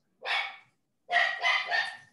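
A dog barking a few times: one short bark near the start, then a quick run of barks from about a second in.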